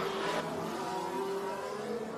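Formula One car engine sound: a steady, fairly quiet drone holding an even pitch.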